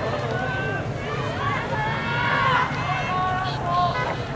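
Many overlapping voices shouting to rowing crews during a race, with long drawn-out calls that rise and fall, over a steady low background rumble.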